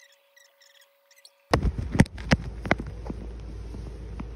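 Silence for about a second and a half, then a few sharp clicks and knocks of something being handled close to the microphone, loudest about two seconds in, over a steady low background hiss.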